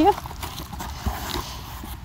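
Faint rustling and a few light knocks as the flaps of a cardboard box and the papers on it are pulled open.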